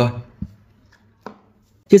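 A dull low thump and, about a second later, one sharp click: speaker plugs being handled on a tabletop.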